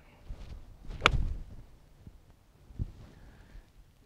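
A golf club striking a ball off fairway grass: one sharp, crisp click about a second in, followed by a brief low rush.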